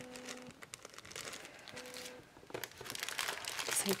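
Clear plastic packet of paper lace doilies crinkling and rustling as it is handled, growing louder in the second half.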